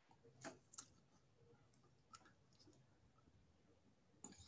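Near silence with three faint clicks, the first about half a second in and the last about two seconds in.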